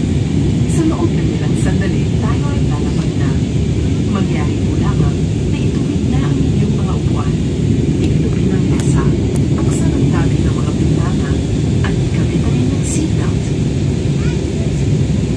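Steady cabin drone of a jet airliner in flight, engine and airflow noise heard from a window seat during the descent before landing. Faint short sounds sit above the drone, likely passengers' voices.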